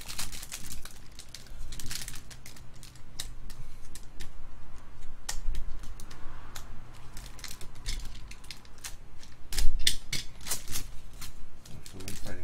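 Foil trading-card packs crinkling and tearing open as they are handled, with cards flicked and shuffled: an irregular run of clicks and crackles, the loudest about ten seconds in.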